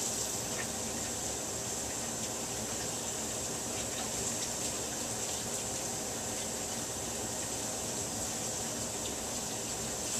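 Bathroom sink tap running in a steady stream, turned off just after the end.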